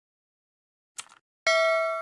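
A single mouse-click sound effect, then half a second later a bright bell ding that rings on and fades: the stock click-and-notification-bell effect of an animated subscribe button.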